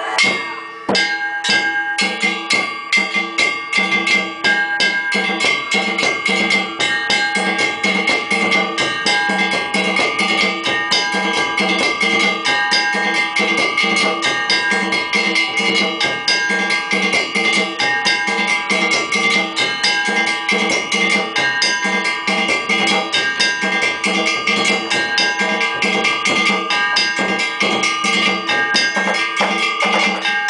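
Japanese festival percussion music: drums and ringing metal gongs struck in a fast, steady beat.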